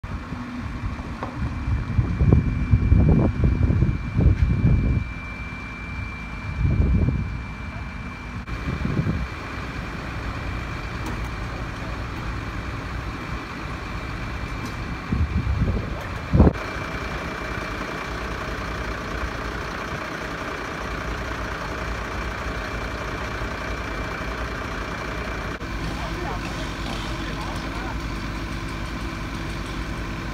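Fire-service crane truck's diesel engine running steadily at idle, a low steady hum. In the first half, several loud rumbling bursts of wind hit the microphone.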